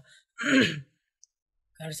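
A man's short, breathy sigh, falling in pitch, lasting about half a second.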